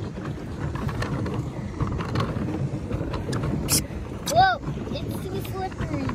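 A pedal boat under way on a lake: steady low rushing noise from water churned by the pedalled paddle wheel and wind on the microphone. A short vocal exclamation comes about four and a half seconds in.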